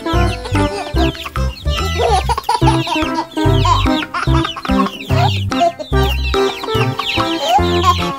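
Young chickens and chicks peeping and clucking over upbeat background music with a regular bass beat.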